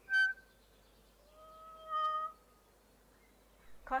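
A bird calling twice: a short, sharp note right at the start, then a longer held note lasting about a second, a little lower in pitch.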